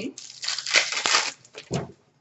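Crinkling, tearing rustle of a foil trading-card pack wrapper and cards being handled, lasting about a second, with a short separate rustle near the end.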